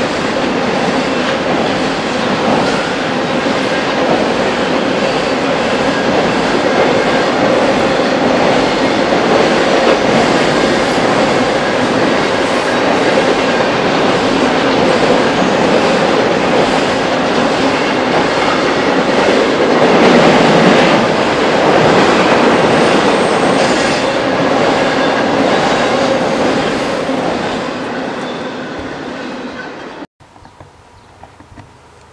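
Double-stack intermodal container freight train rolling past on a steel girder bridge: a steady, loud rumble and clatter of wheels on rail, swelling briefly about two-thirds of the way through, then fading and cutting off suddenly at the end.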